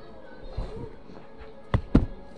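Two sharp knocks in quick succession near the end, over faint background music.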